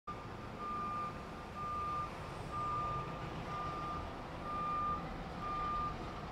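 Concrete mixer truck's back-up alarm beeping about once a second, the same single tone each time, over the low rumble of its engine.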